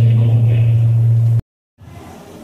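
Loud, steady low hum from a hall's sound system, with faint voices beneath it. It cuts off suddenly about one and a half seconds in, leaving a moment of silence before quieter room sound returns.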